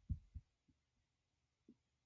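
Near silence: room tone, with a few faint low thumps in the first second and one more near the end.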